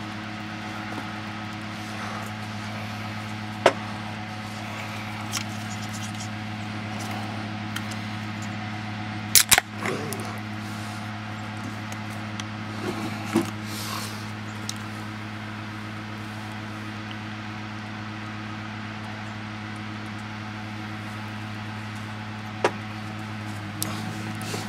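Steady low machine hum with several overtones, broken by a few sharp clicks, one of them doubled about nine and a half seconds in.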